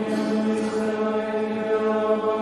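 Men's voices singing Compline in plainchant, a new phrase starting at the beginning on long held notes.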